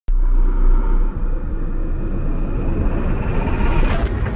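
Cinematic intro sound effect: a loud, deep rumble that starts abruptly, with a whine rising in pitch and swelling toward the end as it builds up to the logo hit.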